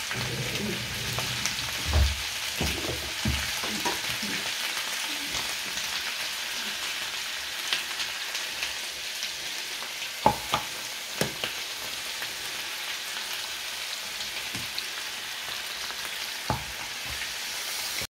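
Pork chops frying in hot oil in a pan, a steady sizzle, alongside a pan of sliced potatoes and bacon frying. A few sharp clicks come as the chops are laid in with a fork.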